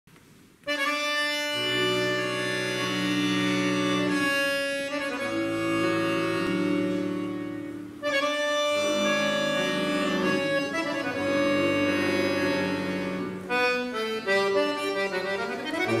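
Bayan (chromatic button accordion) playing a slow melody over sustained chords, starting about a second in, with short breaks between phrases.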